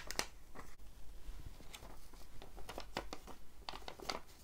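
A sheet of paper being handled as fingers press a small lump of white tack onto its corner: faint, scattered crackles and light taps, with a slightly sharper tick at the start.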